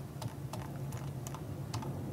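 Scattered light clicks from a desktop computer's mouse and keyboard as an on-screen article is scrolled, about six in two seconds, over a low steady hum.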